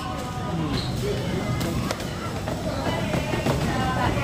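Background music with a murmur of voices, and a few light clicks and rustles from a plastic snack bag being handled.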